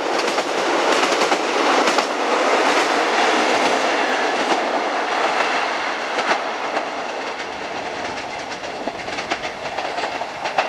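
Class 156 diesel multiple unit running past on the line below, its wheels clicking over the rail joints. The rushing noise is loudest in the first few seconds and then eases a little as the train draws away.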